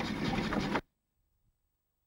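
Fishing boat's engine running with a fast, even mechanical rhythm, heard from on board; it cuts off abruptly under a second in.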